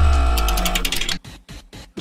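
Electronic transition sting: a deep bass hit fading out over about a second, overlaid with rapid stuttering clicks, followed by a few short glitchy ticks with brief silences between them.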